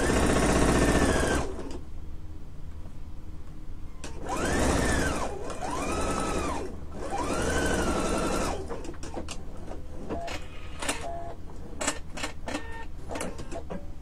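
Husqvarna Viking sewing machine stitching a seam in several short runs, its motor whine rising and falling in pitch as the speed changes. After the last run come scattered light clicks.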